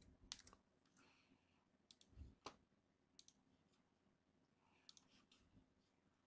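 Faint, scattered clicks of a computer keyboard and mouse, a few at a time, with near silence between them and a soft low thump about two seconds in.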